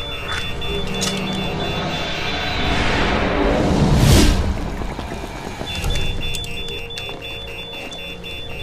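A patient monitor alarm beeps rapidly and steadily over a low, rumbling music score. A rising whoosh sound effect swells to a peak about four seconds in and cuts off sharply, masking the beeping until it comes back.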